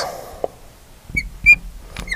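Marker tip squeaking on lightboard glass as a plus sign is written: a light tap, then two short high squeaks about a second and a second and a half in.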